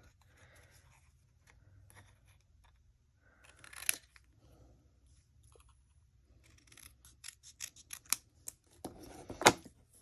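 Small scissors snipping through white cardstock to trim a narrow border, in faint, scattered cuts. A sharper snip comes about four seconds in, then a run of quicker snips and clicks, and a loud sharp click just before the end.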